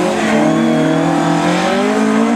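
Rally car engine running hard as the car drives away through a corner, its pitch holding fairly steady with small rises and falls.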